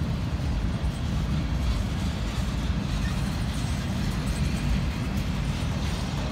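Freight train boxcars rolling past close by: a steady low rumble of steel wheels on the rails.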